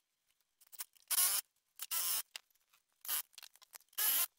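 A few short, separate scraping and knocking sounds, each well under half a second long, as plywood parts are handled and fitted into place.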